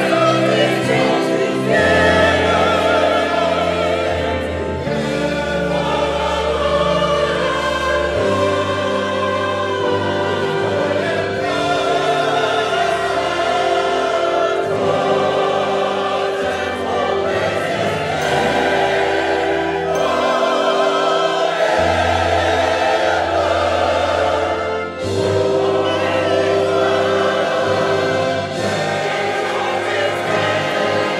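A large gospel choir singing in full harmony with vibrato, holding long chords. It is backed by instruments, with the bass note shifting every few seconds.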